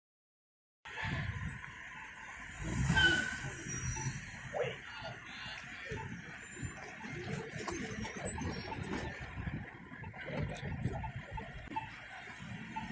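City street noise with road traffic and faint distant voices, mixed with the handling and footstep noise of someone walking while holding the phone. The sound cuts in suddenly about a second in, and there is a brief louder sound about three seconds in.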